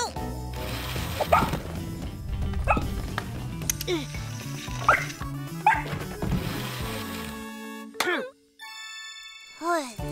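Cartoon soundtrack: upbeat children's music with short vocal cries from the characters, among them a dog's bark. About eight seconds in the music stops with a sharp click, a brief steady tone follows, then another short cry.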